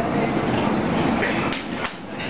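Theatre audience laughing, the laughter easing off near the end.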